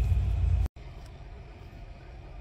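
Low rumble of the car's supercharged LSA V8 idling, heard inside the cabin. It cuts off abruptly under a second in, leaving a much quieter steady hum.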